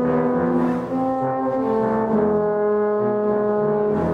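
Concert band playing a passage of held brass notes in chords, with a trombone to the fore and the notes changing every half second to a second.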